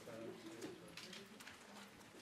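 Faint, low murmured voices in a quiet room, with a few light ticks and rustles.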